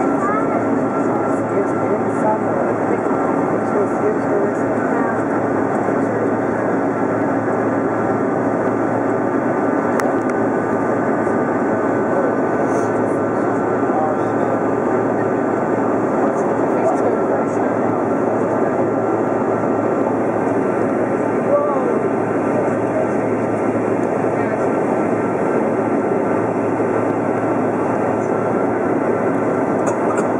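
Steady engine and airflow noise inside an airliner cabin in flight, an even rush at a constant level with a few faint steady tones.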